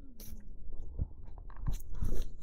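Silk saree rustling and crinkling as it is handled and spread out on a table, in short scattered bursts with a couple of soft knocks.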